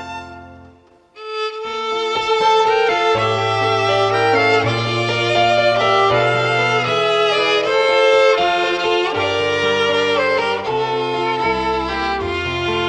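Two violins playing a melody over digital piano accompaniment in an instrumental interlude between sung verses of a hymn. The music breaks off to a brief pause in the first second, then comes back in about a second in and runs on.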